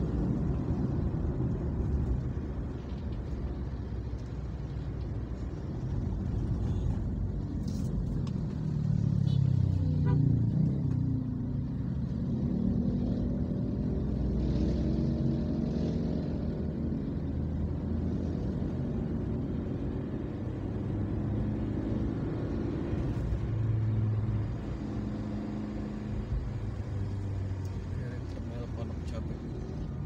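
Inside a moving car: steady engine and road rumble while driving in city traffic, getting louder for a moment about ten seconds in, with indistinct voices at times.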